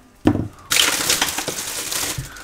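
Dry papery skin of a garlic bulb crackling as it is handled, a dense run of small crisp ticks starting a little under a second in, after a short knock.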